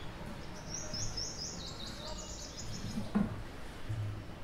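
A small bird chirping in the background: a quick run of short, high chirps, faint, starting about a second in and lasting about two seconds.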